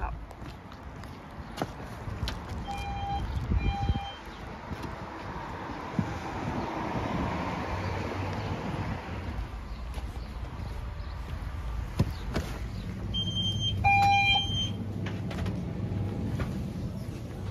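Electronic beeps: two short beeps about a second apart, then a quick run of beeps about three seconds before the end. Between them, street noise swells and fades as a vehicle passes on the wet road.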